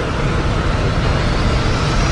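Record-label logo intro sound effect: a dense, steady rumbling whoosh with a faint rising sweep above it.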